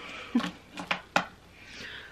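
A cardboard mailer box being handled: a few short knocks and taps, then a soft rustle near the end.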